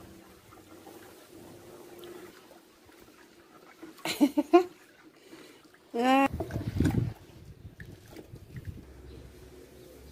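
Caustic soda being stirred into water in a plastic basin with a wooden spoon: faint liquid swishing, broken by two short vocal sounds about four and six seconds in.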